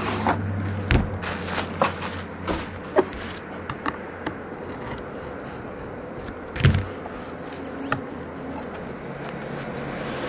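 Handling noise from a trading-card hobby box being unwrapped and cut open on a table: scattered clicks, scrapes and knocks of the box and wrapping, with a heavier thump about a second in and another about two-thirds of the way through.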